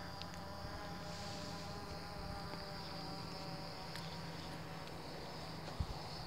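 DJI Phantom 3 Professional quadcopter's motors and propellers buzzing steadily and faintly, a thin insect-like whine of several steady tones, as it flies a fast run under full stick. A small brief knock near the end.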